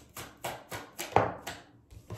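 A tarot deck being shuffled and handled: a string of short, sharp card clicks and taps, the loudest a little over a second in.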